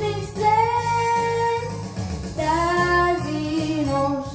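A girl singing long held notes into a handheld microphone, two sustained phrases with slides between pitches, over a pop backing track with a steady beat.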